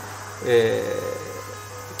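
A steady low hum, with a man's single drawn-out vocal filler sound starting about half a second in and fading out.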